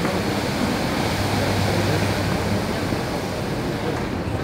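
Large split-flap departure board updating: many flaps flipping at once, blending into a dense, steady rattling clatter.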